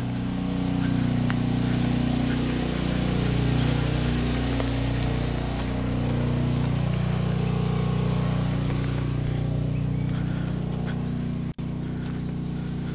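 Portable generator engine running steadily: a constant low hum whose pitch wavers slightly, with a brief dropout near the end.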